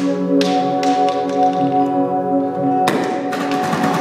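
Improvised experimental ensemble music: several steady tones held as a drone, a higher tone joining about half a second in, with scattered taps and clicks, and a dense clatter of strikes breaking in near the end.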